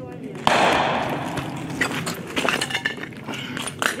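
A sudden loud blast about half a second in, echoing off the surrounding buildings for over a second, followed by several scattered sharp cracks: combat fire close to the front line.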